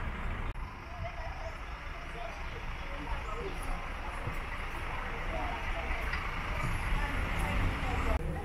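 Outdoor ambience: indistinct voices talking in the background over a steady low rumble, with a brief dropout about half a second in.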